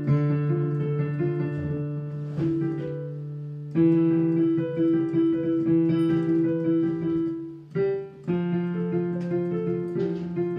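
Digital piano played in arpeggio practice: held bass notes under repeating broken-chord figures. The chord changes about four seconds in, and the playing drops away briefly just before eight seconds, then resumes on a new chord.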